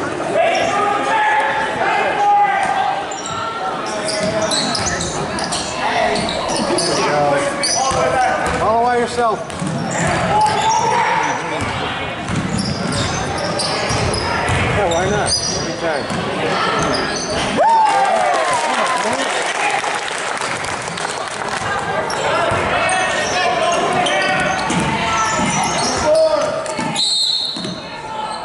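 Sounds of a youth basketball game in a gym: a basketball bouncing on the hardwood court, with many voices of players and spectators calling out over each other, echoing in the large hall.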